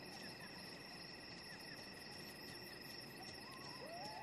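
Faint, steady trilling of insects such as crickets, with a brief faint rising whistle about three seconds in.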